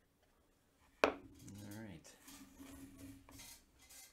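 A paintbrush set down with one sharp clack on a watercolour paint palette, followed by light handling noise.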